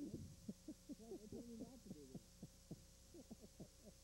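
Quiet, muffled voices of two commentators talking, over a faint steady hum.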